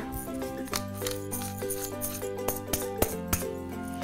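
Hand-held pepper mill being twisted and grinding, a run of irregular sharp clicks, over background music with held tones.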